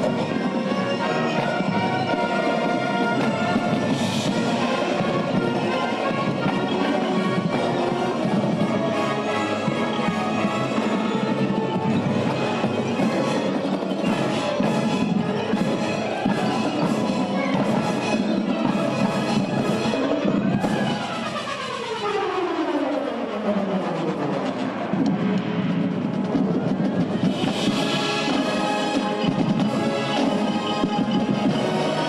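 Marching band playing, with brass, saxophones and drums. About twenty seconds in, several notes slide down together in a long falling glide lasting about three seconds before the full band comes back in.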